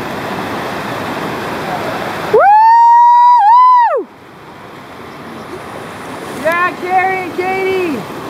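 Steady rush of whitewater from a river play wave, then about two seconds in a very loud, high-pitched held whoop from a person close by, lasting under two seconds and ending with a dip and fall in pitch. Near the end, three shorter sung-out calls in a lower voice.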